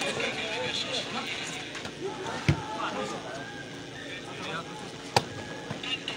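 A volleyball being struck twice during a rally, a dull hit about two and a half seconds in and a sharper smack near the end, over the background voices of spectators.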